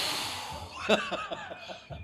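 A breathy whoosh as a flaming drink is blown on and flares into a fireball, fading out within about half a second. A few faint chuckles follow about a second in.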